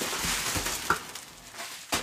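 Plastic bubble wrap crinkling and rustling as a cardboard watch box is pulled free of it, then a single sharp knock near the end as the box is set down on the table.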